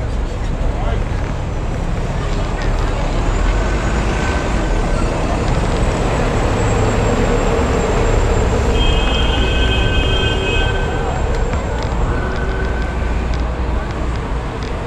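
Busy city street traffic noise heard from a moving camera, with a steady low rumble of wind on the microphone. A few high held tones come and go from about three seconds in, the strongest stack of them around nine to eleven seconds.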